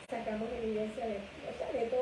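A woman speaking at a studio microphone, her voice held on a steady pitch, after a brief audio drop-out at the very start.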